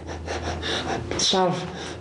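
A man talking, low and halting, with a breathy intake and a short falling vocal sound about a second and a half in.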